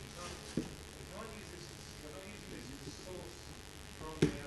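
Faint speech from a single voice, too weak for the words to be picked out, with one short knock about half a second in.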